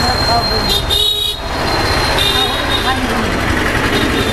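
Street traffic rumble with vehicle horns sounding, one honk about a second in and a shorter one just after two seconds.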